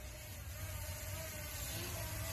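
DJI Mini SE drone fitted with Master Airscrew propellers hovering, heard as a faint, steady propeller hum; these replacement props run quieter than the stock ones' bee-like buzz.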